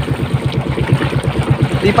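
Small engine of an outrigger fishing boat running steadily with a rapid, even chugging.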